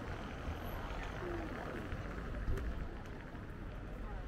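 Busy street ambience heard while rolling along: a steady low rumble, with faint voices of passers-by now and then.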